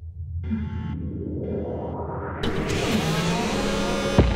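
Electronic logo intro sting: a low drone with short synth tone pulses, then a rising whoosh swell that builds from about halfway through.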